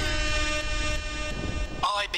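Radio show intro jingle: one long held note with many overtones over a low rumble, cutting off near the end as a voice comes in.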